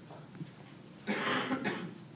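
A person coughing once, a short hoarse burst about a second in.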